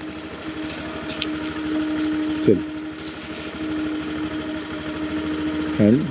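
Small petrol scooter engine running steadily at low speed, a continuous even hum, with a short falling sound about two and a half seconds in.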